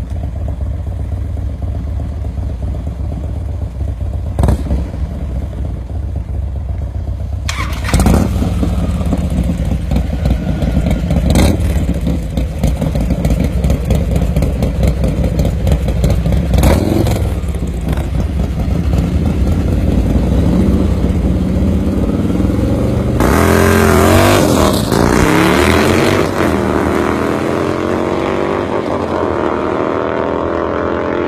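Harley-Davidson bagger V-twin engines running loudly, with sharp throttle blips. About two-thirds of the way through the revs climb and swing up and down, and near the end they rise steadily as the bikes pull away.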